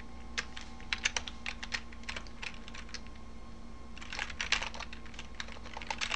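Typing on a computer keyboard: scattered keystrokes, then a quicker run of keys about four seconds in.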